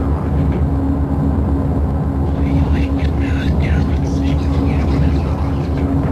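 Experimental noise music from a cassette recording: a loud, dense low rumbling drone with a steady held tone above it, and voice-like wavering sounds in the middle.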